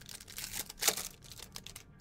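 Foil trading-card pack wrapper crinkling and tearing open by hand: a run of quick crackles and clicks, the sharpest just before a second in.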